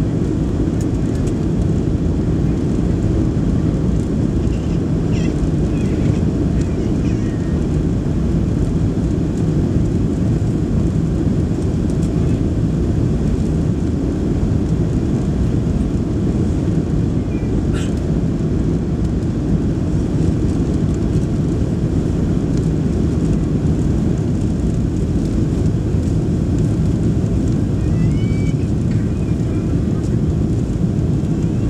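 Steady cabin noise inside a Boeing 737 Next Generation airliner on its landing approach: a constant low rumble of the CFM56 engines and the airflow over the airframe, with the flaps extended. A brief click sounds a little past halfway.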